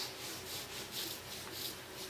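Small hand roller spreading wet glue over a thin wood veneer strip: a quiet, rhythmic rubbing as it is rolled back and forth, coating the veneer so it can later be ironed on.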